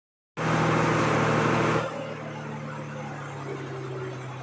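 Vehicle engines running on a steep mountain road: a loud rushing noise for about the first second and a half, then a quieter steady low engine hum.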